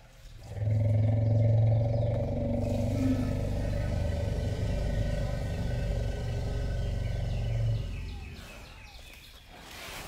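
An elephant giving one long, low bellow that starts about half a second in and fades near the end. It is an excited greeting call, not aggression.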